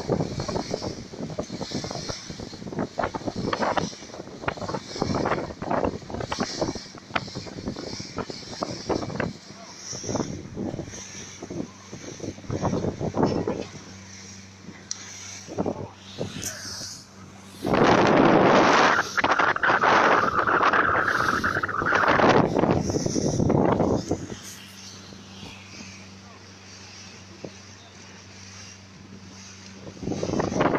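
Motorboat running at speed: a steady low engine drone under wind buffeting the phone's microphone and water rushing past the hull. A louder stretch of rushing with a held high tone comes a little past the middle.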